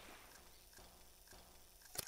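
Near silence once the music has faded out, with a few faint soft ticks about half a second apart and a short click at the very end.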